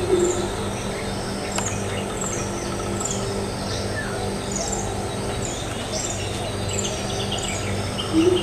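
The last deep hoots of a greater coucal's calling run fade out just as it begins. After that, small birds repeat short, high, falling chirps about once a second over a steady high insect drone.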